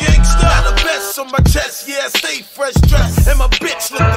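Hip hop track: a heavy bass-and-drum beat with rapped vocals over it. The bass drops out for about a second and a half in the middle, then comes back.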